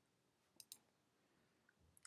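Near silence with two faint, short clicks in quick succession a little after half a second in.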